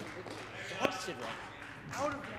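Faint, echoing voices of players and bystanders in a large indoor sports hall, with a brief shout about a second in and another voice near the end, over the hall's low background hum.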